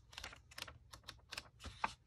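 Pages of a small paper ephemera booklet being leafed through by hand: a quick, faint run of light paper flicks and rustles, about six a second.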